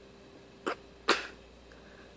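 A small dog sneezing twice close to the microphone, a short one followed by a louder, longer one about half a second later.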